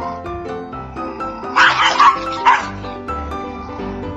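Small dog barking three times in quick succession over background music.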